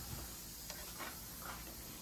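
A few faint ticks of dental instruments being handled over a low, steady hiss.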